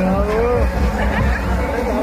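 People's voices talking in a group, with one drawn-out voice rising in pitch early on, over a steady low rumble.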